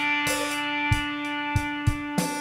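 Electric mandolins holding a sustained chord in a slow, sparse instrumental intro, with three short low thumps under it: one about a second in and two close together near the end.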